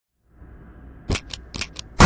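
Four quick, sharp clicks over a faint low hum.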